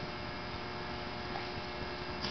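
Steady electrical mains hum with a low hiss, with no speech: the background noise of the microphone and recording.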